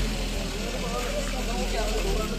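A parked ambulance van's engine idling with a steady low hum, with several people talking over it.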